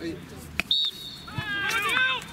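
A referee's whistle gives one long, steady, high blast starting less than a second in, the signal for half-time, with voices calling out over its end.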